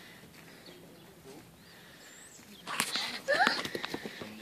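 Faint outdoor quiet, then about two-thirds of the way in a quick run of sharp knocks together with a child's short voice sounds.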